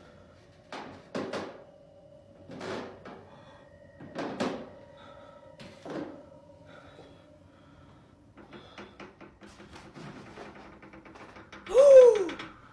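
Footsteps on stairs: five slow, heavy thuds about a second and a half apart, followed by a quicker run of fainter taps. Near the end a loud sound glides up and then down in pitch.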